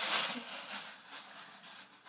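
Packaging rustling and crinkling as it is handled, fading out about a second in.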